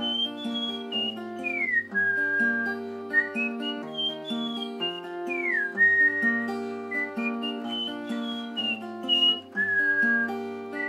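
Fingerpicked steel-string acoustic guitar, capoed at the 3rd fret, playing the Em–C–D–G solo progression, with a whistled melody carried over it. The whistle slides down in pitch twice, about a second and a half in and again about five and a half seconds in.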